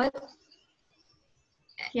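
A pause in conversation over a video call. A woman's voice trails off at the start and another voice begins near the end, with near silence in between.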